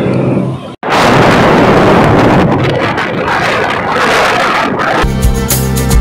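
A loud, even rushing noise for about four seconds, after a brief drop-out, then background music with steady sustained notes starts about five seconds in.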